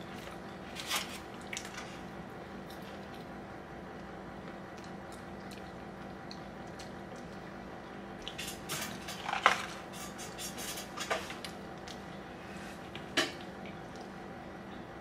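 Quiet eating at a table: a few scattered small clicks and crunches as a piece of candy popcorn is chewed and bowls are handled, over a steady low hum.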